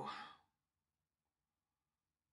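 A person's drawn-out "oh" trailing off about half a second in, followed by silence.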